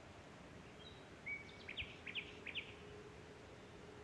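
A bird sings one short phrase about a second in: a brief flat whistle, then four quick sharp notes. Under it is faint steady background noise with a low hum.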